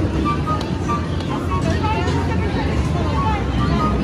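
Busy arcade ambience: background voices and music with short electronic game beeps over a steady low rumble.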